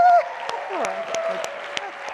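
A held, amplified 'woo' shout through a microphone cuts off just after the start, and audience applause follows with scattered cheers.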